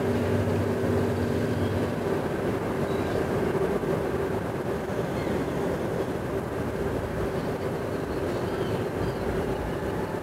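Steady rumbling background drone with a constant low hum held throughout, and a second, lower hum that fades out about two seconds in.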